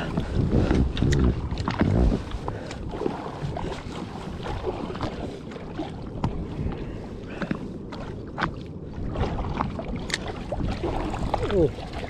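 Small waves lapping and slapping against the hull of a drifting jet ski, with a steady low rumble and scattered light clicks and knocks.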